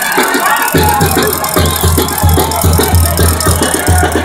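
A live Mexican banda playing, with a heavy bass line that comes in about a second in, pulsing steadily about three times a second.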